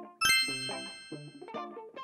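A single bright, bell-like ding about a quarter second in, ringing out and fading over about a second and a half, over soft background music.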